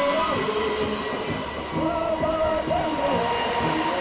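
Jet aircraft engine running: a steady high whine over an even rushing noise, with a wavering melody line laid over it.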